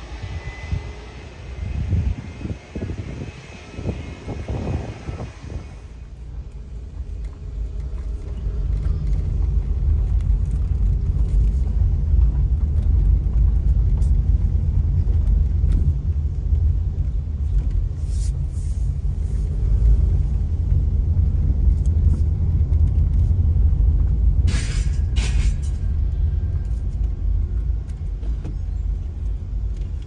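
Low, steady rumble of a car driving slowly, heard from inside the cabin, growing louder about eight seconds in. A few brief sharp clicks or rattles come about two-thirds of the way through.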